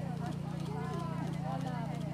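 Indistinct chatter of several people over a steady low hum, with faint hoofbeats of a horse cantering.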